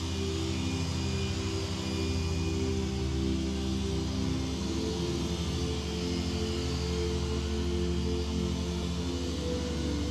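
Background music of sustained chords over a steady bass, the chords shifting slowly.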